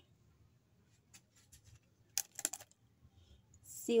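Wax paper being handled: a few faint clicks, then a brief crinkle about two seconds in.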